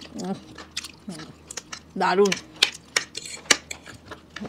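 A metal spoon and a fork clicking and scraping against dinner plates in many quick separate clinks. Two short voiced sounds from one of the eaters, a faint one at the start and a louder one about two seconds in.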